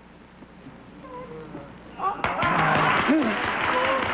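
Television studio audience: a few scattered voices calling out over a hush, then about two seconds in a sudden burst of applause mixed with excited cries and laughter.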